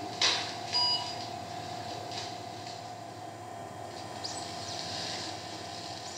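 Room sound of a cardiac catheterization lab: a steady hum from the equipment, a brief rustle just after the start, and a short electronic beep about a second in.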